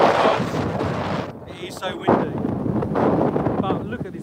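Strong wind buffeting a phone's microphone in gusts: a rushing noise that eases about a second in and picks up again around the two-second mark. Brief faint snatches of voice come through near the middle and the end.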